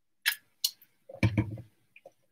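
Drinking from a plastic tumbler: two sharp clicks, then a short lower sound a little over a second in.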